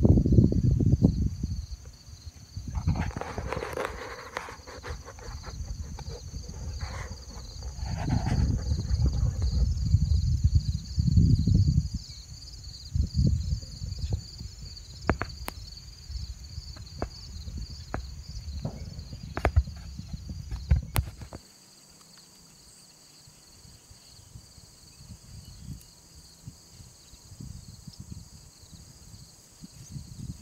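Wind and handling noise on a phone's microphone, with scattered knocks and taps, over a steady pulsing chorus of insects. The low noise drops away suddenly about two-thirds of the way through, leaving the insects and faint rustling.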